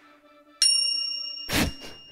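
Outro sound effect: a bright bell-like ding about half a second in that rings on, then a short thump about a second later, over the fading tail of background music.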